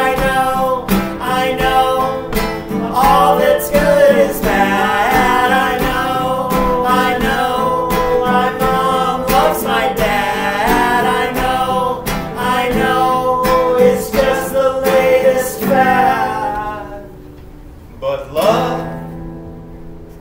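Live acoustic guitar strumming under a voice singing long, sliding notes. About 17 seconds in the music drops away, and one short sung note follows near the end.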